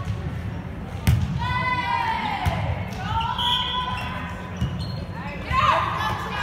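Volleyball struck sharply on a serve about a second in, followed by a couple of duller ball contacts as the rally goes on. High-pitched shouted calls from the players run through it, in a large gym.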